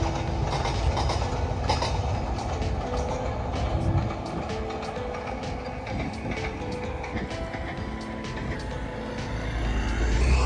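Background music with a melody over the steady rumble and clatter of a passenger train running past.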